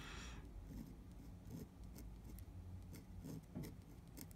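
Fine steel dip-pen nib (a Nikko Japanese-character nib in a bamboo holder) scratching across paper while writing Chinese characters: faint, irregular short strokes.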